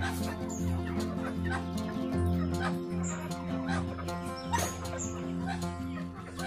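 Village chickens clucking over background music with sustained notes and a steady bass line.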